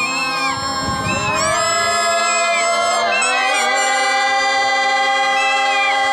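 Folk song sung by a group of village women, voices rising and falling over steady held notes.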